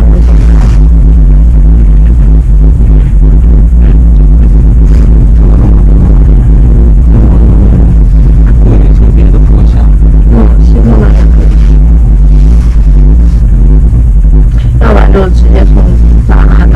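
Loud, steady low rumble and hum of a moving cable car cabin, with muffled voices near the end.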